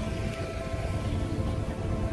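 Background music with steady held notes, over a low rumbling noise.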